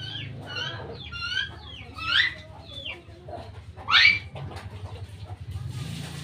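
Birds calling repeatedly in the background, a series of short calls with two louder rising calls about two and four seconds in, over a low steady hum.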